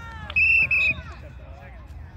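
Referee's whistle blown in two short blasts, a shrill steady tone with a slight warble, blowing the play dead after the ball carrier's flag is pulled.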